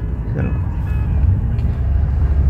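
Low, steady drone of a BMW E36's M52B30 3.0-litre straight-six engine, heard from inside the cabin while driving.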